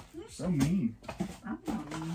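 A person's voice making a wordless, wavering sound whose pitch swings up and down in smooth waves.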